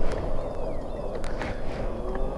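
Daymak Pithog Max rolling along a paved path: steady wind rumble on the microphone and tyre noise, with a faint steady whine and a few light clicks.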